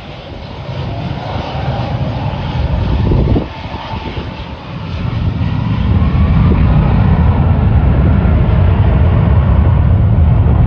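Jet engines of an Icelandair Boeing 757 airliner on the runway, building power with a faint gliding whine. About five seconds in they grow louder and then run loud and steady, typical of takeoff thrust.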